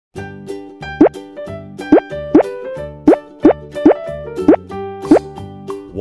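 Cartoon pop sound effects, about eight quick rising 'bloop' swoops, over cheerful children's background music.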